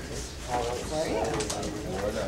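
Indistinct chatter of several people talking at once in a meeting room, with one voice rising and falling above the rest.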